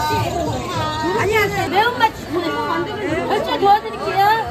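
Speech: a voice talking over background chatter.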